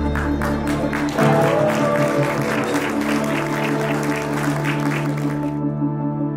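Music playing with a crowd applauding over it; the clapping stops suddenly shortly before the end.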